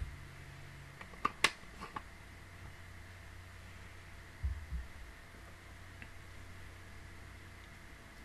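Steady low room hum, broken by a few sharp clicks and knocks about a second and a half in and two dull low thumps near the middle. These are handling noises close to a desk microphone as a drink from a plastic bottle is finished and the bottle is put away.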